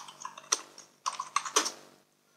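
Computer keyboard keystrokes, a short run of separate taps typing a number into a field.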